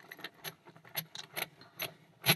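Heavy brass padlock being handled, giving about six light metallic clinks with a short high ring over two seconds.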